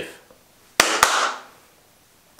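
Two sharp cracks about a quarter of a second apart, the second trailing off in a short hiss.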